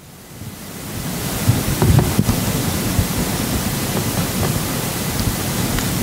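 A dry-erase marker writing on a whiteboard, heard as a scratchy hiss that swells over the first second and then holds steady.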